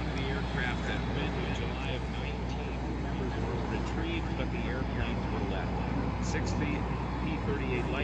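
Steady low drone of a P-38 Lightning's twin Allison V-12 engines as the plane flies past overhead, with indistinct voices over it.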